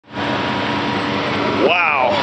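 Turbocharged Nissan Titan 5.6-litre V8 idling steadily. A man's voice exclaims near the end.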